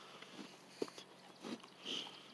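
Faint sounds of a bison eating an apple off the grass: a few short bites and sniffs, the sharpest a little under a second in.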